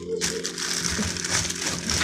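Cardboard frozen-food boxes and their packaging rustling and scraping as they are shuffled around on a freezer shelf, a continuous run of small crackles and rubs.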